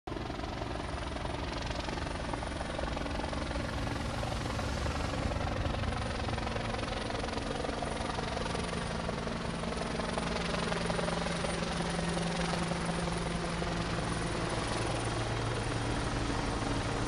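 Steady engine drone of slow-moving emergency vehicles: police motorcycles, a fire engine and SUVs rolling past at walking pace, with an engine hum that holds a little higher from about halfway through.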